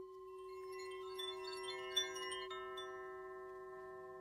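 Chiming outro music: a held, bell-like chord starts suddenly, with many short high chime strikes ringing over it and one louder strike about two seconds in.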